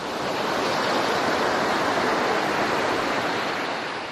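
Sea surf breaking on a beach: a steady wash of waves that swells in over the first second and eases slightly near the end.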